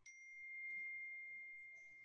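A single clear ringing tone, like a chime or ding, that starts suddenly and holds one steady pitch while slowly fading, with a fainter higher overtone only at the very start.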